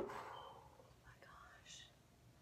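Faint, breathy, whisper-like sounds from a woman, mostly quiet between them.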